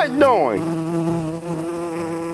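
Bee buzzing sound effect: a steady, low drone. A short falling vocal sound comes right at the start.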